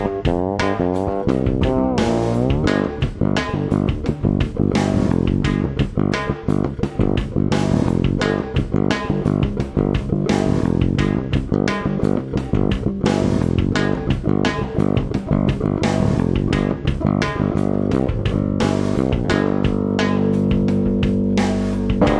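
Fretless electric bass played fast and hard, with dense plucked attacks and sliding pitch glides near the start, settling into held notes near the end.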